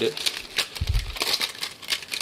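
A clear plastic 116 (70 mm) film developing apron being unwound by hand, crinkling and crackling in a run of short clicks, with a dull bump about a second in.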